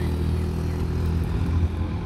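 Street ambience dominated by a steady low rumble of wind buffeting the phone's microphone, mixed with road traffic.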